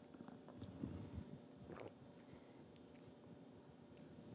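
Near silence, with a few faint sips and swallows of a drink about a second in.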